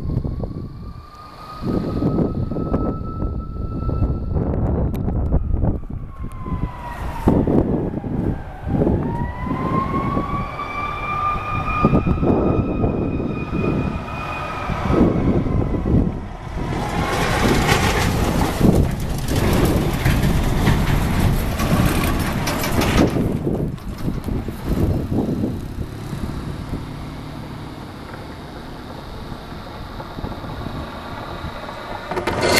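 An emergency vehicle's siren wails, its pitch slowly rising, falling and rising again, over a low traffic rumble. In the second half a loud rushing noise takes over for several seconds, then dies down near the end.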